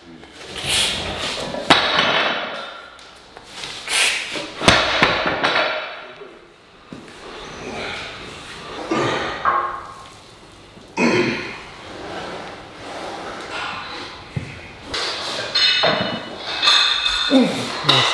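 Heavy barbell deadlift reps: strained breaths and grunts of effort, with knocks and clanks as a barbell loaded to 320 kg with bumper plates is pulled and set back down on the floor, the loudest knock about five seconds in.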